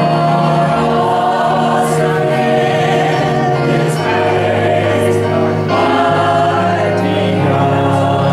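Church choir singing a hymn in slow, long-held notes.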